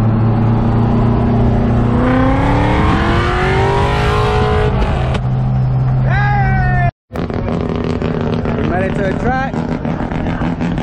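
Mazda RX-7's 13B rotary engine heard from inside the cabin, running steadily and then accelerating, its pitch rising for about three seconds before dropping back as it shifts. A brief shout comes near the end of the pull. The sound then cuts off abruptly to another engine running steadily, with voices.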